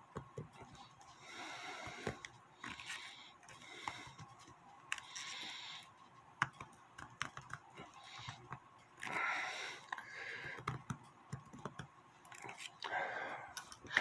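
Needle-nose pliers working at a clock's mainspring barrel held in a gloved hand: irregular small metal clicks with short bursts of scraping and rubbing. The barrel holds a rusty mainspring.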